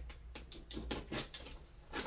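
Fingers and fingernails picking and scratching at plastic wrap and packing tape on a cardboard box, a scattered run of small crackles and scrapes.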